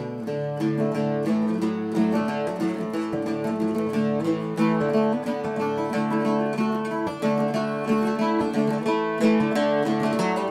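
Archtop acoustic guitar playing a steady run of plucked notes and chords: the instrumental introduction to a song, before the singing comes in.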